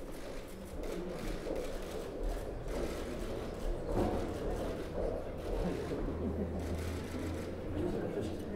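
Indistinct murmur of many people talking at once in a large room, with no single voice standing out.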